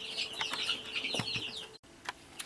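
A bird chirping in a rapid, steady run of short high notes over a faint low hum, with a couple of light knocks; it cuts off abruptly just before the end.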